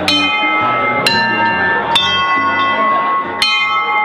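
Brass bells hanging from the ceiling, rung by hand with pull cords: four strikes, roughly a second apart with a longer gap before the last, each left ringing on. The strikes differ in pitch, as if more than one bell is sounded.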